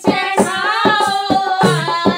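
Women singing a Hindi haldi wedding folk song to a hand-played dholak, holding a long wavering note over steady drum strokes; deep booming bass strokes of the drum come in near the end.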